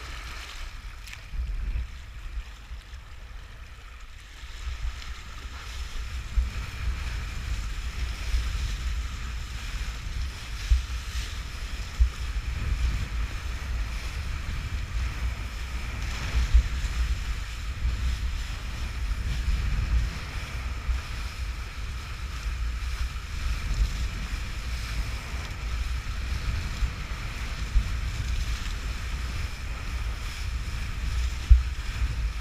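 Wind rumbling on the microphone of an action camera riding on a kitesurfer, over the hiss and splash of a kiteboard skimming across choppy water. Quieter for the first few seconds, then louder and steady from about five seconds in.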